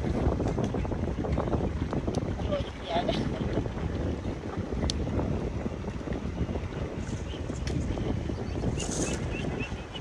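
Wind buffeting the microphone: a steady low rumbling rush across an open field.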